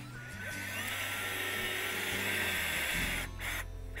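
Power drill boring a tap hole into the trunk of a silver maple to collect sap, the motor whining steadily as the bit cuts into the wood, then stopping shortly before the end.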